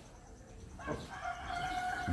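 A rooster crowing: one long, held call that begins about a second in.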